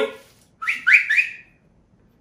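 A person whistling to call a dog: three short rising whistles in quick succession, then quiet.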